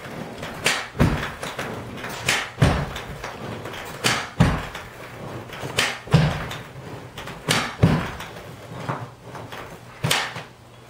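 Kneeless carpet stretcher thudding repeatedly as it is driven into the carpet and shoved toward the wall. The thuds come in close pairs about every second and a half.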